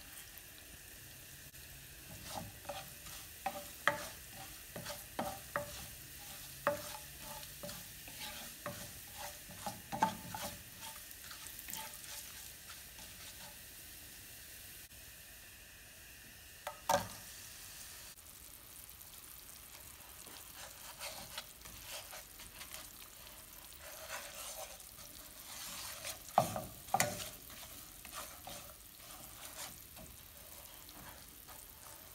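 Ground coriander and cumin sizzling in hot oil in a nonstick pan, with a spoon repeatedly scraping and tapping against the pan as it stirs. One sharp knock comes just past halfway as lumps of jaggery are tipped in, and a few more stirring strokes follow near the end.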